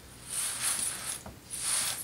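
Fabric and elastic being handled, two rasping stretches of noise as the elastic is drawn out of the scarf's sewn casing.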